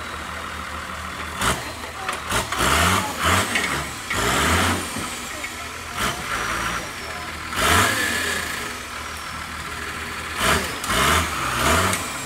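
Off-road 4x4's engine idling and revving hard in repeated surges, about five times, as it crawls up a steep rocky gully.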